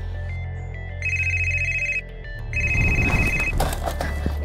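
Red push-button landline desk phone ringing with an electronic trill: two rings, each about a second long, half a second apart. Near the end comes a clatter as the handset is picked up.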